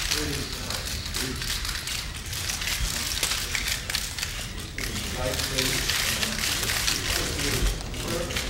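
Dense clicking from many press photographers' camera shutters and film-advance motors going off at once, overlapping into a steady crackle, with low voices murmuring underneath.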